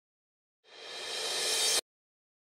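A hissing swell of noise, an intro sound effect, that fades in from silence and builds steadily louder for about a second before cutting off abruptly.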